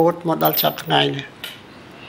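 A man's voice speaking for about a second, then fading into low background hiss with a few faint clicks.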